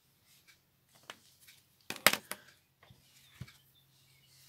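Small tools and objects being handled on a craft work table: scattered light clicks, a sharper cluster of clicks about two seconds in, and a single knock a little later.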